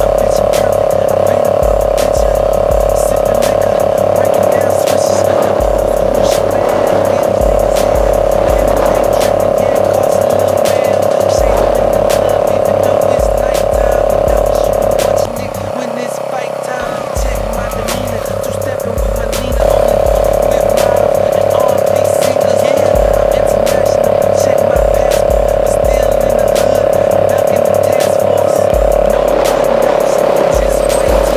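Hip-hop backing track with a heavy, repeating bass line under a steady held tone.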